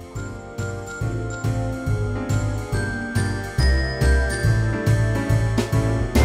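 Instrumental background music with jingling, bell-like tones over a steady beat.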